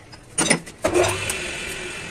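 A couple of metallic clanks, then about a second in an old metal lathe with a truck clutch pressure plate in its chuck is switched on and runs with a steady hum that slowly fades.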